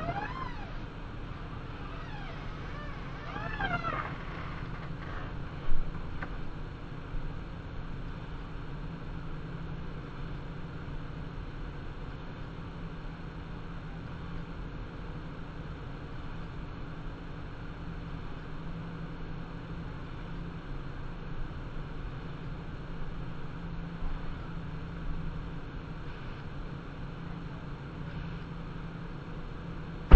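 A raccoon's short, high calls, two brief bouts in the first few seconds, over a steady low hum, with a single sharp knock about six seconds in.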